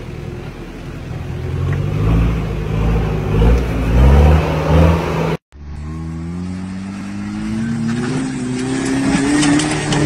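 Jeep Cherokee XJ engines working hard off-road, revving unevenly under load. After a sudden cut about halfway through, a second engine's pitch climbs steadily as it accelerates, with scattered sharp ticks toward the end.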